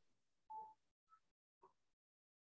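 Near silence, with one faint, brief, steady tone about half a second in.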